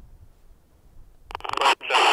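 EF Johnson 5100 handheld two-way radio's speaker putting out a loud, rough burst of received audio about a second and a half in: the incoming answer to a radio check on the freshly frozen radio, showing that it still receives.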